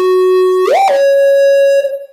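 Electronic dance music from a DJ set, down to a lone synthesizer line with no beat. One buzzy synth note holds, slides up in pitch about two-thirds of a second in, and settles on a higher held note that fades near the end.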